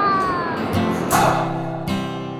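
A short cry falling in pitch over a rushing noise, then acoustic guitar music starting well under a second in.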